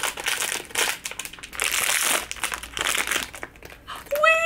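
Foil wrapper of a Smiski blind-box figure being crinkled and pulled apart by hand, in repeated bursts.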